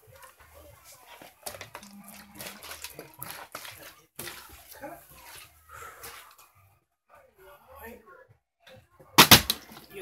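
Scattered small knocks and handling noises with a faint voice, then a single loud thump a little after nine seconds in.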